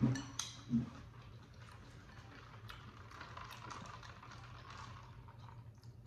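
A short 'mm' of appreciation, then faint close-up chewing of beef tripe: soft, irregular wet mouth clicks.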